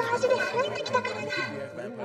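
Several voices talking over one another, with steady background music underneath.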